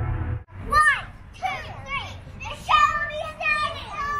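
Young girls shrieking and squealing at play, in short high cries that swoop up and down in pitch. A snatch of music cuts off abruptly about half a second in.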